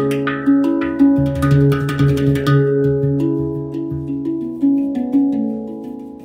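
Handpan played with the fingertips: struck metal notes that ring on and overlap, a quick run of notes in the first half, then fewer, slower notes fading away.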